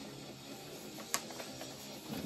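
Faint background music under the soft handling of a vinyl record's paper insert, with one sharp tick about a second in.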